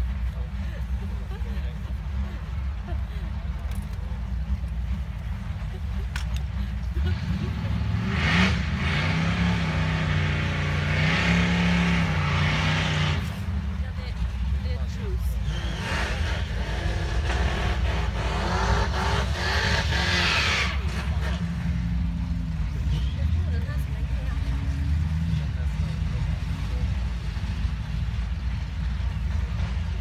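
Car engines revving hard in two long bursts of about five seconds each, the first about eight seconds in, the second soon after, with tyre noise: cars doing burnouts that leave tyre smoke on the track.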